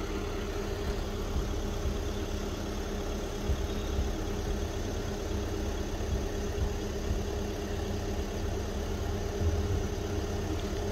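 A car engine idling steadily.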